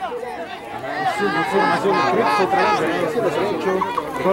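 Many voices talking over one another: chatter of players and spectators along a football sideline.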